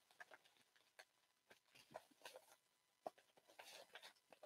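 Near silence, with a few faint ticks and rustles of a paper mailer envelope being handled and opened.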